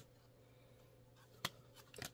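Near silence broken by two short clicks of stiff trading cards being flipped through by hand: a faint one at the start and a sharper one about a second and a half in.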